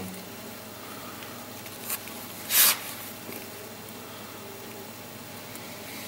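Faint scratching of a small steel tool cutting and scraping a funnel into packed Delft casting clay, with one short hiss about two and a half seconds in.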